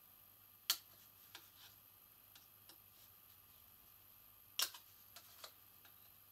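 Small pointed scissors snipping thin white card in short, faint, uneven cuts. Two sharper snips stand out, one under a second in and one about a second and a half before the end, with quieter ticks between.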